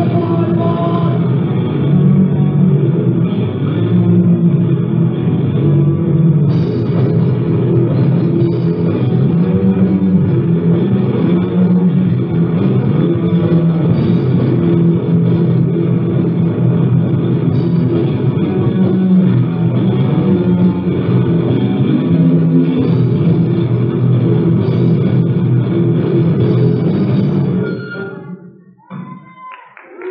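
Lo-fi live cassette recording of a thrash/punk band playing, with electric guitar and drum kit, its top end dull. The song breaks off about two seconds before the end.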